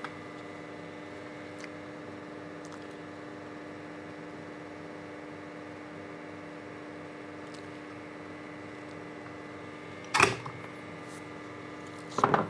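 A steady low electrical hum, with a few faint handling ticks. About ten seconds in, a short clatter of a tool being set down on the workbench.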